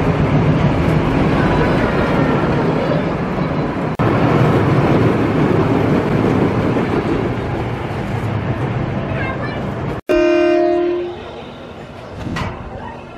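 Timber Twister roller coaster train rumbling along its steel track. Near the end, a steady horn-like tone sounds for about a second, then the level drops.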